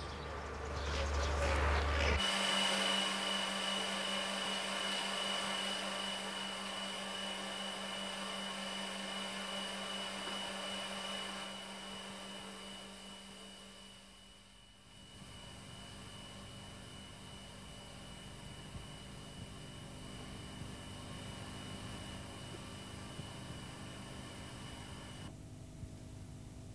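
Power-plant machinery running: a steady hum with a high-pitched whine that cuts in abruptly about two seconds in, then gives way to a quieter, duller steady hum around the middle.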